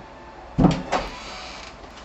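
Wooden door being handled: a loud thump a little over half a second in, a smaller knock just after, then a short fading rustle.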